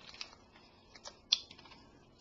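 A few faint mouth clicks and smacks from sucking on a tamarind hard candy, the sharpest about a second and a half in.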